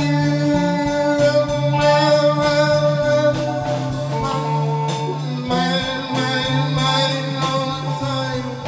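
Small rock band playing live in a rehearsal room: electric guitar holding ringing, sustained chords over a steady drum-kit beat.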